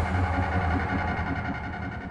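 A steady low drone with a few sustained tones over it, easing slightly near the end.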